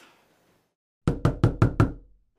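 Five quick, sharp knocks on a door, about five a second, starting about a second in.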